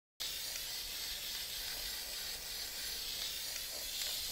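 PME pearl luster aerosol spray can hissing steadily in one long continuous spray, starting abruptly.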